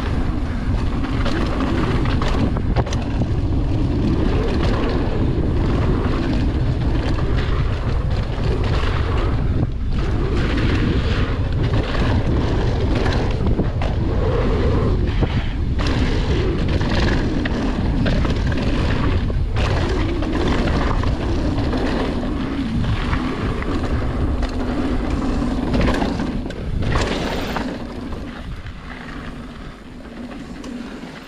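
Mountain bike ridden fast along a dirt trail: wind buffeting the camera microphone in a steady rumble, tyres running over the dirt, and frequent sharp knocks and rattles from the bike over bumps. It grows quieter over the last few seconds as the bike slows.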